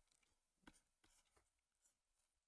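Near silence, with one faint tap about two-thirds of a second in and a few fainter ticks after it: a stylus writing on a tablet.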